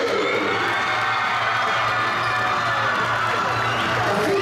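Crowd in a gymnasium cheering and shouting steadily, with music playing underneath.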